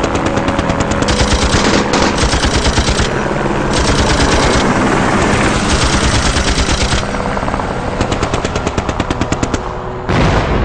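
Machine-gun fire in rapid bursts that start and stop several times, over a steady low rumble.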